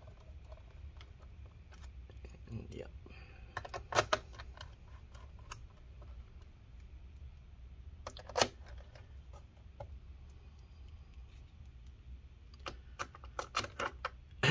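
Scattered light clicks and taps of small screws and a screwdriver on the plastic bottom cover of an MSI Katana GF76 laptop as the cover's screws are driven back in. The clearest clicks come about 4 and 8 seconds in, with a quick run of them near the end, over a low steady hum.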